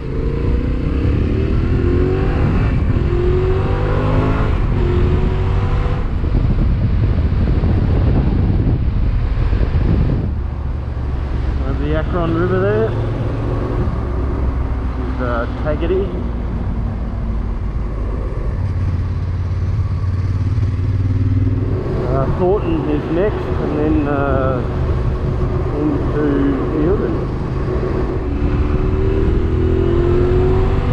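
Motorcycle engine pulling through the gears, its pitch climbing with each gear and dropping at each change, several times over. Under it runs a steady low rumble of wind and road noise.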